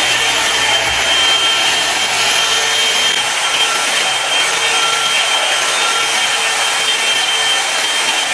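Electric hot-air brush (blow-dry straightening brush) running steadily, its fan blowing hot air with a faint high whine as it is drawn through long, dry hair to smooth it.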